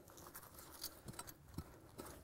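Faint scuffing and light patting of gloved hands working loose soil, with a few soft ticks near the middle.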